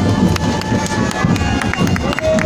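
Marching-band bass and snare drums struck in quick, irregular beats over the noise of a street crowd.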